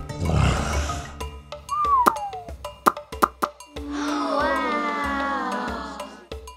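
Cartoon Triceratops sound effect: a short noisy growl in the first second, followed by a short gliding whistle and then a long tone that falls slowly in pitch, over light children's background music.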